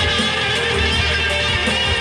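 Electric guitar played through an amplifier, with a sustained low bass note underneath.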